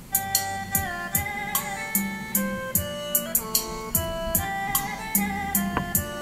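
Music playing through a JBZ 0801 portable trolley karaoke speaker: a song's instrumental intro, with melody lines over a steady drum beat that starts at once.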